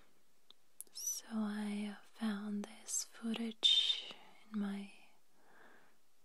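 A woman's soft, half-whispered voice speaking a few short phrases from about one second in to about five seconds in.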